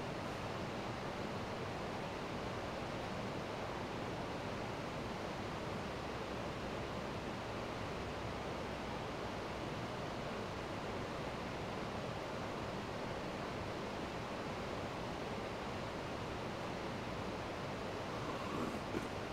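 Steady, even hiss of room background noise with no distinct sounds.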